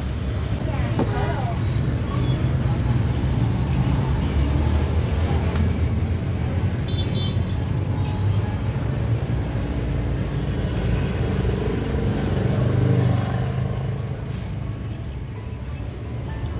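Steady rumble of road traffic going by, easing a little near the end.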